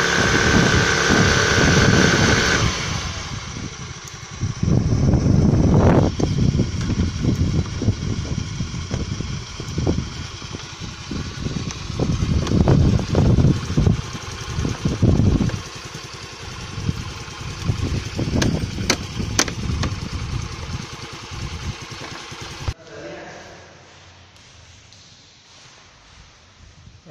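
Hero Maestro Edge scooter's small single-cylinder four-stroke engine running and revved up and down in surges while it is being repaired after dying and refusing to start. Voices talk over it, and near the end the sound cuts suddenly to something much quieter.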